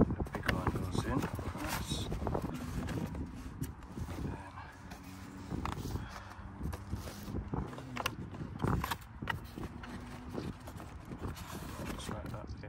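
Clicks and knocks from assembling a foam RC model warbird: metal wing spar tubes and foam wing and fuselage parts being handled and fitted together. A faint steady low hum runs through the second half.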